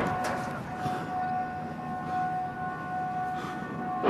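A warning siren sounding one steady, unwavering tone over background hiss, the alarm for incoming indirect fire during a mortar attack.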